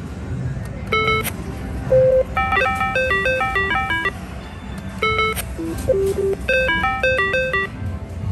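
Electronic slot-machine chimes: four short bursts of quick beeping notes stepping up and down in pitch, over the steady din of a casino floor.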